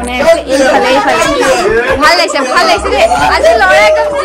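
Loud chatter: many voices talking over one another at once, with no single speaker standing out.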